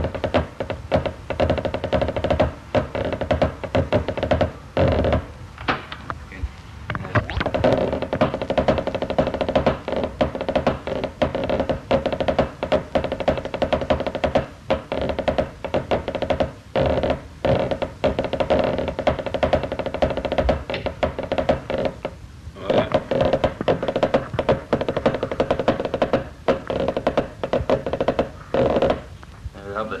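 Pipe band snare drumming played with sticks on a practice pad: fast, dense strings of strokes and rolls, broken by a few short pauses.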